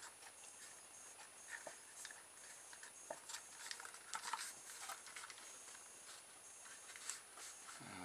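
Faint handling sounds: light clicks and short rustles as a cardboard rubber-band car is turned over in the hands and a rubber band is fed down through its cardboard tube chassis.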